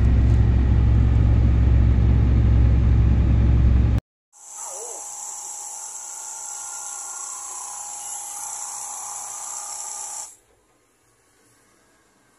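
Diesel engine of a tracked mining machine running close by with a loud, steady deep rumble, cut off suddenly about four seconds in. After a brief gap a steady hiss runs for about six seconds and stops shortly before the end.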